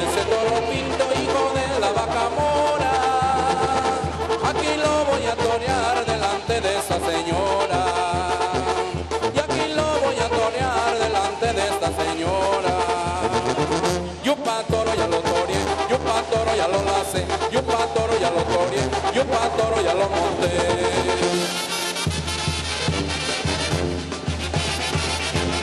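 A band playing a chilena, Oaxacan folk dance music with a steady, quick beat, which drops out briefly about 14 seconds in.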